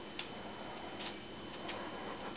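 Three faint, light clicks from a cat batting at a hanging sock toy, over quiet room tone.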